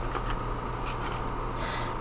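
Faint rustling of paper banknotes being folded and handled, with a brief louder rustle near the end, over a low steady hum.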